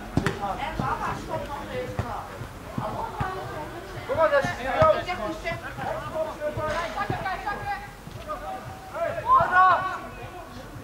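Players shouting to each other on an outdoor football pitch, the calls coming in short bursts, with a few sharp knocks of the ball being kicked, one right at the start.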